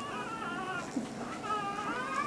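Young Rottweiler puppies whining softly: thin, high-pitched, wavering cries, with several overlapping and running on without a break.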